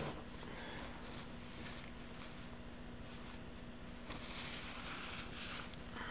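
Faint rustling and handling noise from gloved hands working at a workbench, growing louder from about four seconds in, over a steady low hum and hiss.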